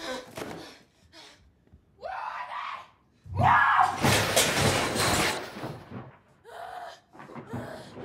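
A woman screaming and shouting without clear words in an angry family fight: a rising yell about two seconds in, then a longer, louder scream, and a shorter cry near the end.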